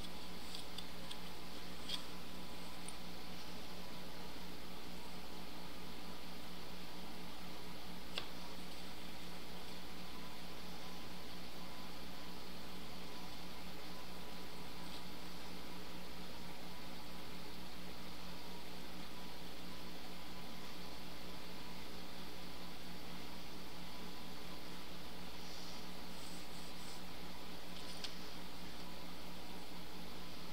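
Steady low background hum with hiss, unchanging throughout, with a few faint soft taps as a plastic set square is handled on a silicone mat.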